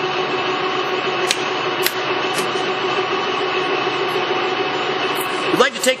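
LeBlond Regal engine lathe running under power, a steady machine whine with several held tones at an even level. Two light clicks come between one and two seconds in.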